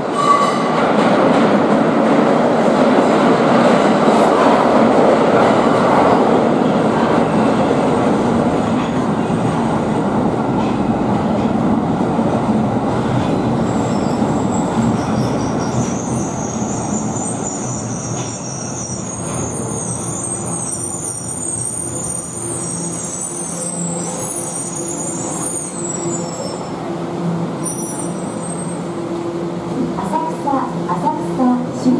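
Tokyo Metro Ginza Line 1000 series subway train running into an underground station and slowing to a stop. A loud rumble of wheels on rail fades as it slows, then high-pitched squealing sets in about halfway through as it brakes, with a steady low hum, and a last short squeal near the end.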